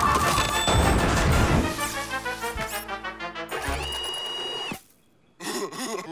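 Cartoon soundtrack of comic music with sound effects. It breaks off into a brief near-silence about five seconds in, then comes back with wobbly sliding tones.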